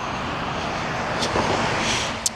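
Steady rushing noise of a passing vehicle, growing slightly louder toward the end.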